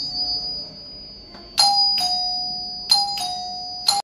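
Electric doorbell chime sounding a two-note ding-dong, a higher note then a slightly lower one, repeated about every 1.3 seconds as its wall bell push is operated. Each note rings on and fades before the next pair.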